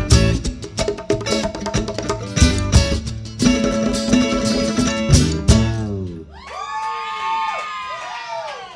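A band plays the last bars of a song live, with strummed guitar and stand-up bass and sharp strikes. The music stops about six seconds in, and the audience whoops and cheers.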